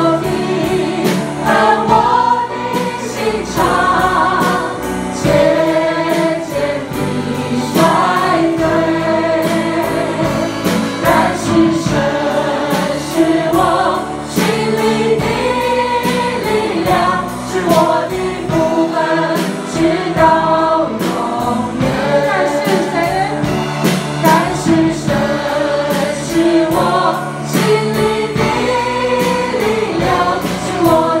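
A church worship team singing a gospel praise song together into microphones, amplified, over instrumental accompaniment with sharp repeated strokes.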